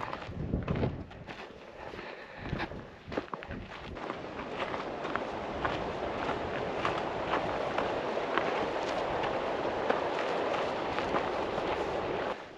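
Footsteps on a dirt and gravel trail, uneven and irregular, with a steady rushing noise that builds from about four seconds in.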